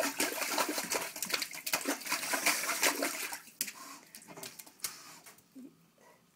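A dog splashing in the water of a toilet bowl with its head and paws, a rapid irregular run of splashes that thins out over the last couple of seconds.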